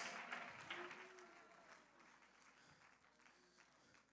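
Mostly near silence: faint congregation noise, scattered light clapping and movement as people get to their feet, fades away within the first two seconds.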